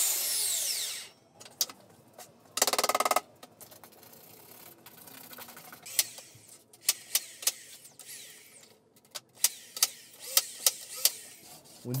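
Workshop handling noise as a thin bender board strip is fitted around the edge of a round plywood platform top. A hissing scrape opens, a brief buzzing rattle comes about three seconds in, and a string of sharp clicks and taps follows in the second half.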